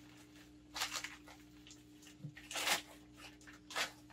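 Plastic zip-top bag crinkling and rustling in gloved hands as freeze-dried vegetable powder is shaken out of it into a blender jar, in three short bursts about two seconds apart near the start, middle and end, with quiet between.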